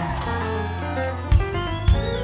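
Live band playing an instrumental passage: sustained low bass notes under chords, with two sharp drum hits in the second half.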